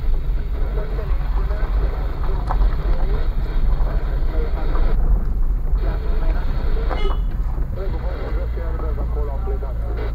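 Car driving slowly over a rough unpaved road, heard from inside the cabin: a steady, deep engine and tyre rumble.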